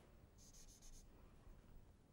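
Near silence, broken about half a second in by a brief, faint rubbing of a duster on a chalkboard: a few quick scrubbing strokes lasting about half a second.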